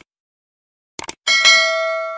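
Subscribe-button animation sound effect: a couple of quick mouse clicks about a second in, then a bright bell-like notification chime that rings on and slowly fades.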